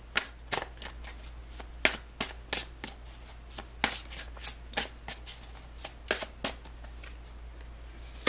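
Tarot cards being shuffled by hand: a run of short, sharp card snaps and slaps at an irregular pace.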